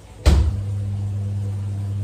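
A kitchen appliance switches on with a sharp click about a quarter second in, then runs with a steady low electrical hum.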